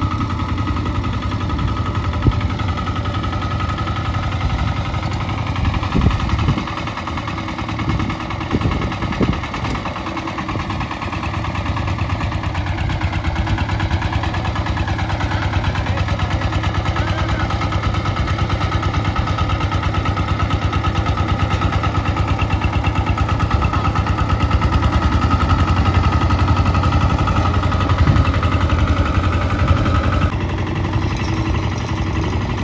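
Single-cylinder diesel engine of a two-wheel walking tractor (power tiller) running with a steady rhythmic chug. Its speed dips briefly near the middle, and it runs louder through the second half.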